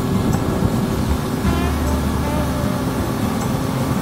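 A Kawasaki ZRX1100's inline-four engine running steadily at cruising speed under a continuous rush of riding wind, picked up by a helmet-mounted camera's microphone.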